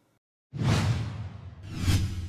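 Logo-sting sound effect: silence, then a sudden whoosh over a deep bass hit about half a second in that fades away, followed by a second whoosh that swells up to a peak near the end.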